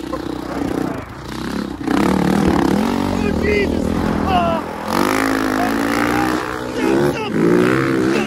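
Dirt bike engine revving and pulling hard as it speeds over rough bog tracks, louder from about two seconds in and again at five. A rider's wordless yells come over it, with wind rushing on the microphone.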